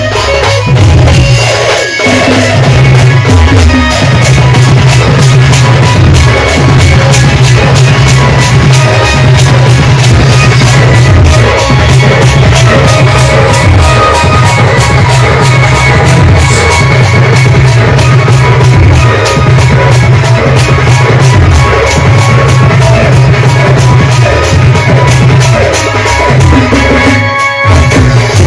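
Loud live folk band music with drums and keyboard, playing a fast, steady beat.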